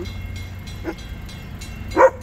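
Freight train of covered hopper cars rolling past close by: a steady low rumble with faint clicks from the wheels and a short louder sound right at the end.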